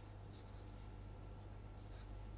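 Faint scratching of a pen writing on paper, a few short strokes, over a low steady hum.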